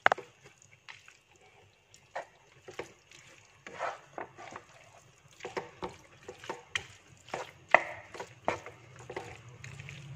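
Wooden spatula stirring squid pieces through thick masala in a non-stick frying pan, scraping and knocking against the pan in irregular clacks. The clacks are sparse at first, come thicker from about halfway, and the loudest falls about three-quarters through.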